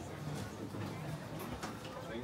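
Low background chatter of people talking, with a few light clicks and knocks.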